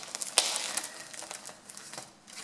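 Gift-wrapping paper on a parcel crinkling and rustling as it is handled, with one sharp crackle about half a second in, then softer rustling that fades.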